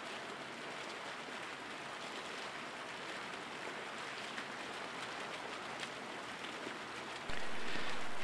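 Steady splashing of water spilling over a fountain's ledge into a shallow pool. It is faint at first and turns abruptly louder near the end.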